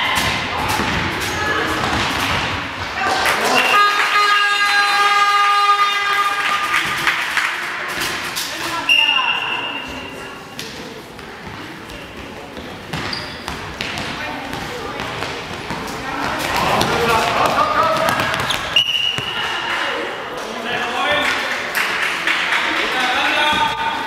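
Indoor handball match: a handball bouncing on the hall floor and shoes striking it, with players and spectators shouting. A horn sounds steadily for about three seconds around 4 s in, and short, high whistle blasts come near 9 s and again near 19 s.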